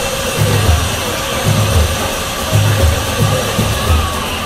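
Music with a steady, repeating bass beat.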